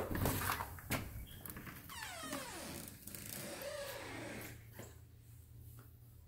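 Front door being opened: the handle latch clicks at the start and again about a second in, and a short falling squeal follows about two seconds in as the door swings open.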